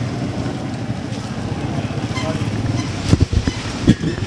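A steady low engine-like rumble, with a few short knocks near the end.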